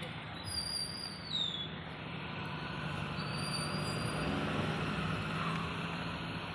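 Road traffic noise with a vehicle engine running close by: a steady low hum under a continuous roadway rush. A few thin high-pitched squeals fall in pitch during the first couple of seconds.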